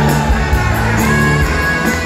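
Live rock band playing an upbeat song, led by electric guitars over drums with a steady beat, heard loud from close to the stage.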